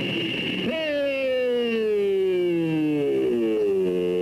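Race car engine winding down, its pitch falling steadily for about three seconds, then stepping up briefly and falling again.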